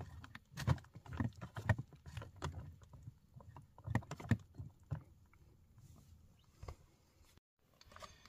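A metal fork stirring chunks of biscuit in hot water inside a food pouch: irregular soft clicks and scrapes, a few a second, dying away after about five seconds.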